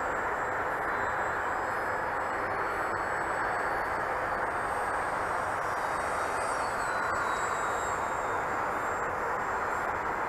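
Electric RC flying wing on a 4S battery, flying at a distance: faint high motor-and-propeller whine that bends in pitch as it passes, over a steady rushing noise.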